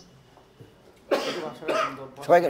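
A man coughs about a second in, a short rough burst after a moment of quiet.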